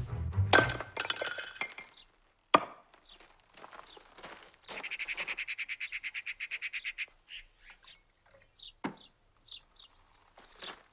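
An axe splitting firewood on a chopping block: a chop with clattering, clinking pieces about half a second in, and one sharp crack of the axe into wood about two and a half seconds in. Then a bottle glugging rapidly and evenly for about two seconds as it is poured into a glass, followed by scattered short bird chirps.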